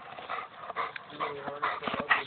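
A bulldog making a few short whining sounds, coming more often in the second half.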